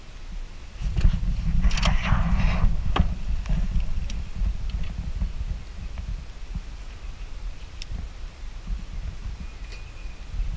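Low, uneven wind rumble on the microphone that sets in about a second in, with rustling handling noise over the first few seconds and a few sharp clicks, as an angler handles a spinning rod and reel on a small aluminium boat.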